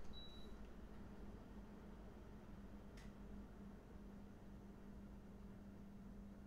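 Near silence: room tone with a low steady hum and a single faint click about halfway through.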